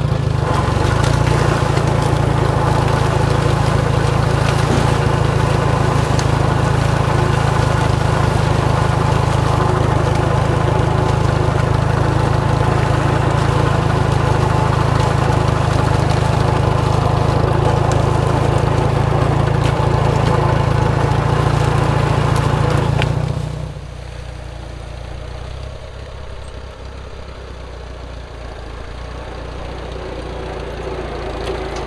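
Farmall 140 tractor's four-cylinder gasoline engine running steadily, heard loud and close from the seat just behind its upright muffler and exhaust stack as the tractor moves along the corn rows. About 23 seconds in the sound drops suddenly to a quieter, more distant run of the same engine.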